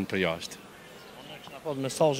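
A man speaking in short phrases, with a pause of about a second in the middle during which only faint background is heard.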